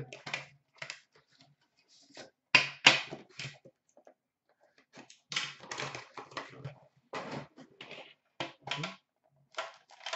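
A box of hockey trading cards being unpacked by hand: its tin is lifted out and handled. The sound is an irregular run of clicks, taps and packaging rustles, loudest about two and a half seconds in.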